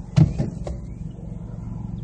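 2013 Ford Focus SE's 2.0-litre four-cylinder idling steadily at about 680 rpm, heard from inside the cabin. A loud thump comes a fraction of a second in, followed by two lighter knocks.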